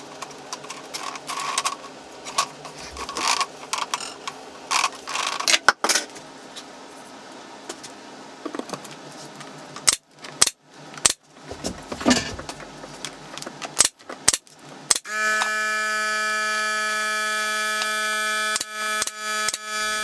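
Rope and wooden offcut sticks being handled and knocked against a plinth, then a pneumatic 23-gauge pin nailer firing several sharp shots. About fifteen seconds in, a steady pitched hum starts suddenly and holds.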